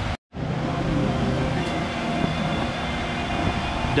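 A split-second dropout to silence at an edit, then steady background noise with a low rumble and a few faint steady tones, without speech.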